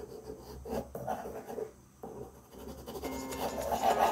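Graphite pencil scratching across drawing paper in short, irregular sketching strokes. Soft background music comes in about three seconds in.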